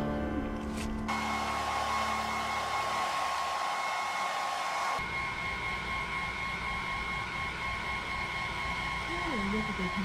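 Handheld hair dryer running steadily with a high whine, starting about a second in as music fades out.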